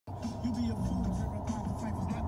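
Muffled voices over a low, steady rumble.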